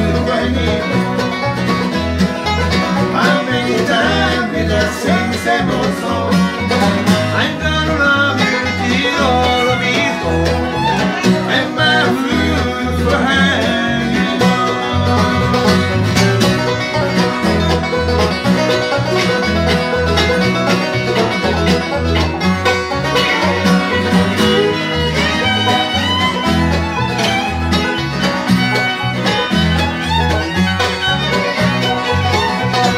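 Bluegrass band playing live: fiddle, five-string banjo, acoustic guitar, mandolin and electric bass together over a steady bass beat.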